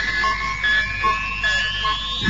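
Electronic synthesizer effects from an advert soundtrack: a steadily rising whistling glide over a short beep that repeats about every two-thirds of a second.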